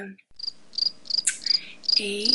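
An insect chirping steadily in short, high, evenly spaced chirps, about three a second.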